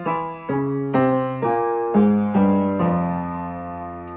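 Upright piano playing an F harmonic minor scale passage, one note about every half second in both hands an octave apart. The last note, struck near three seconds in, is held and rings down.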